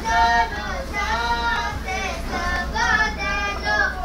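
A child singing a Romanian Christmas carol (colind), held melodic notes one after another, over a low steady rumble of the moving vehicle.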